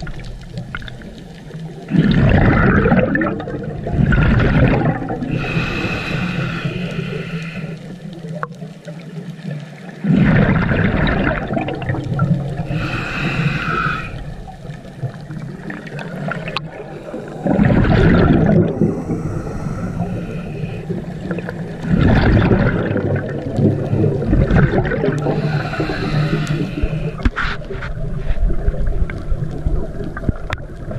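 Scuba breathing through a regulator underwater: bursts of exhaled bubbles alternating with hissing inhalations, four breaths in all, about one every seven or eight seconds.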